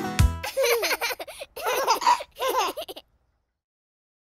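A children's song ends on its last beats, followed by cartoon toddlers giggling and laughing for about two seconds. The sound then cuts off to silence about three seconds in.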